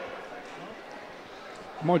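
Low, steady murmur of a gymnasium crowd with faint distant voices. A commentator's voice cuts in near the end.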